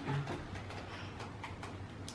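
Quiet lull: paperback book pages being turned, rustling faintly over a low steady room hum.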